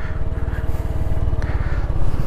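Honda Pop 110i's small single-cylinder four-stroke engine running steadily as the motorcycle rides along, a rapid low pulsing.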